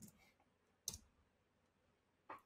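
A single computer-keyboard key press about a second in, the Enter key sending a typed command, in otherwise near silence.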